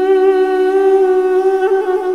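Armenian duduk holding a long melody note over a steady duduk drone, then a quick ornamental turn near the end.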